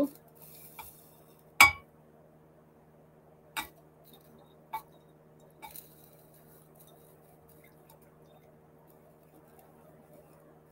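Stainless steel bowl clinking against a Pyrex glass measuring cup while oil is poured slowly: four light clinks, the sharpest with a short ring about a second and a half in, over a low steady hum.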